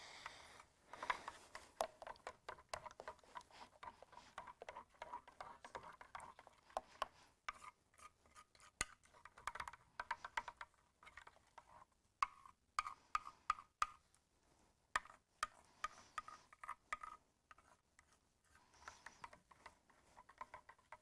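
Glue, water and food colouring being worked together by hand in a clear bowl: irregular, fairly quiet wet clicks and squelches with short pauses between strokes.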